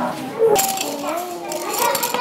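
Several children talking at once in a classroom, with light clicks and rattles of loose cardboard letter cards being handled and sorted on a desk.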